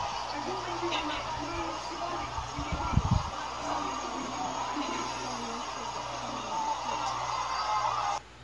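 Indistinct voices of people talking at a distance over steady street background noise, with a brief cluster of low thumps about three seconds in.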